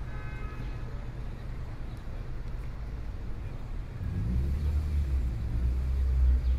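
Low, steady outdoor rumble, like distant city traffic, that swells louder about four seconds in.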